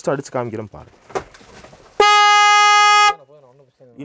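Electric car horn wired up and sounded on test: one loud, steady blare lasting about a second, starting and stopping abruptly.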